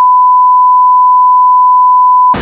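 A steady 1 kHz test tone played with SMPTE colour bars, a single loud unwavering pitch.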